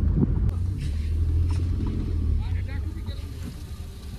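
Car cabin noise while driving: a steady low engine and road rumble heard from inside the car, easing off toward the end as the car slows in traffic.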